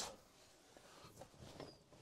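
Near silence, with faint rustling in the second half as the Volkswagen California Coast's manual pop-top roof is pushed up and its fabric sides unfold.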